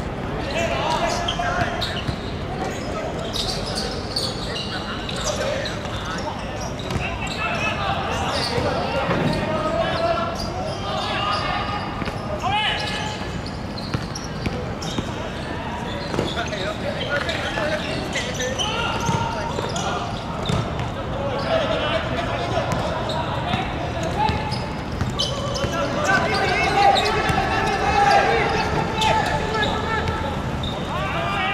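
Players calling and shouting to each other across a hard-surface football court during play, loudest near the end, with occasional sharp thuds of the ball being kicked.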